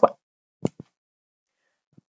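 Two short clicks, the second fainter, a fraction of a second apart, in otherwise dead silence.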